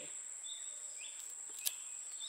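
Garden ambience: a steady high-pitched insect drone with a few short chirps. A single sharp snap comes a little past halfway, as a leaf is torn from the base of a pineapple crown.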